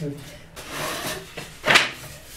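Slatted wooden folding table being folded up: wood sliding and rubbing, then one sharp wooden clack near the end as the top and legs close together.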